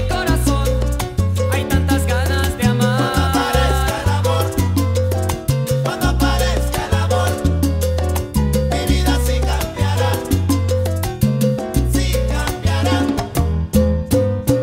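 Salsa music playing: an instrumental band passage over a syncopated bass line, with no singing.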